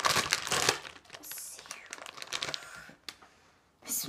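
Clear plastic packaging bag crinkling as it is cut open with scissors and pulled apart, loudest in the first second, then softer rustling that stops about three seconds in.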